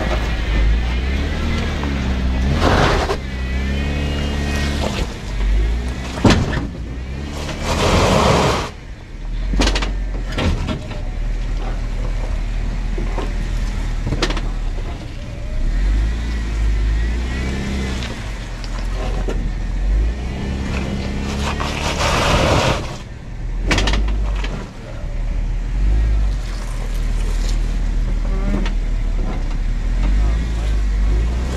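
Jeep Wrangler JKU engine revving up and down in repeated pushes as it crawls a rear tyre up a wet rock ledge, with a few sharp knocks of the underside hitting rock. The rig is not getting grip even with the rear locker engaged, and its crossmember is catching on the ledge.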